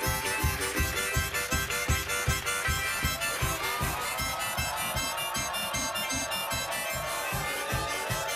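Two harmonicas blown together in wheezy chords, playing a carnival-style tune over a steady low beat of about three beats a second.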